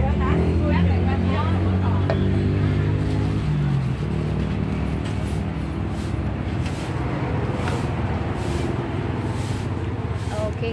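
A motor vehicle engine running steadily close by for about the first four seconds, then dying away, leaving street noise and faint voices.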